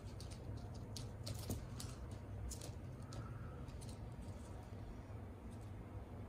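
Irregular light ticks and taps of Onagadori chicks pecking at seed and stepping on newspaper, a few louder ones about a second in, over a low steady hum.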